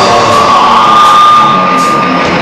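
Live rock band at a break in the song: the drums drop out and a single high note is held for about two seconds, rising slightly at first and then steady, before the full band comes back in.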